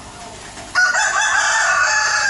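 A rooster crowing: one long crow that starts suddenly about three-quarters of a second in.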